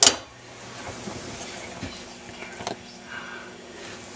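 A single sharp click at the start, then a quiet stretch of faint programme sound from a 1967 RCA CTC-28 tube colour TV's speaker, with another small click later on.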